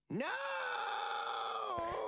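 An old cartoon man's long, drawn-out scream of "No!", held high and level for nearly two seconds before dropping and breaking off.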